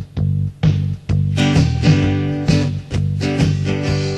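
Instrumental intro of a song: a guitar strummed in a steady rhythm, about two strokes a second, with more instruments joining about a second and a half in.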